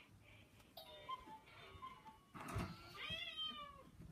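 Two faint, high, mewing calls like a cat's meow: a thin, broken one about a second in, and a stronger one near three seconds that falls in pitch.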